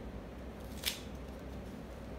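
A single short, crisp rustle about a second in as a paper strip and washi tape are pressed onto a craft-stick basket, over a low steady hum.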